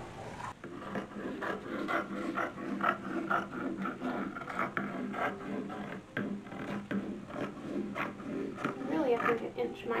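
Fabric shears snipping through sheer organdy and its pinned paper pattern, a run of short cuts at an uneven pace with rustling of the paper and cloth.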